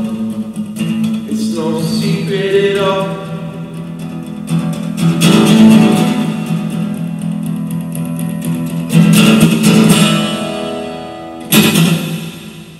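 Acoustic guitar strummed in chords, with loud strums about four and a half, nine and eleven and a half seconds in, the last one ringing out as the song ends.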